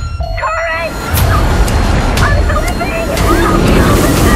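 Loud, dense underwater rumble and churning water with several sharp hits, under muffled shouts and cries of scuba divers. The rumble starts suddenly about a second in.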